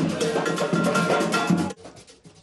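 Live street band music: drums and metal hand percussion with brass, cutting off suddenly about three-quarters of the way through.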